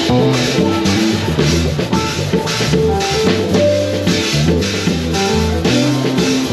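A live church band playing an instrumental groove: a drum kit keeping a steady beat on snare and cymbals over held bass-guitar notes, with keyboard and hand-played congas.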